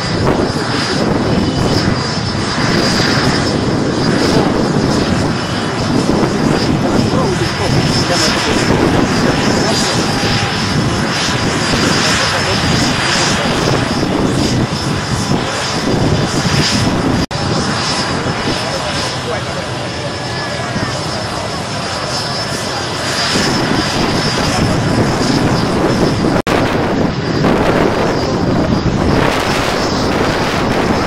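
Helicopter turbine engines running steadily with a thin high whine, under the voices of a crowd. The sound breaks off abruptly about 17 seconds in and again near the end.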